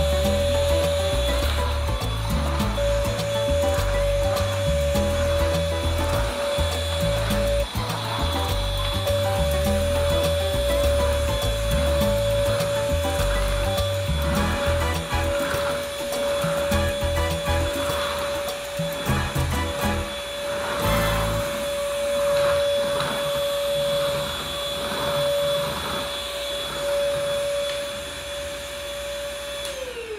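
Corded stick vacuum cleaner running with a steady motor whine as it is pushed over a hardwood floor. At the very end it is switched off and the whine falls away as the motor spins down.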